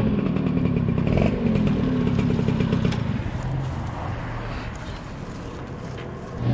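Small motorbike engine slowing down as the bike pulls up and stops. Its pitch falls and it grows quieter over the first few seconds, then it runs low and quiet toward the end.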